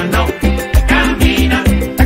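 Upbeat Venezuelan gaita music in a salsa style: a driving, pulsing bass and percussion groove with a melodic line over it.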